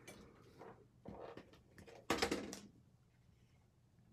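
Paper and cardstock pieces being handled on a craft table: short rustles and scrapes, with the loudest rustle about two seconds in.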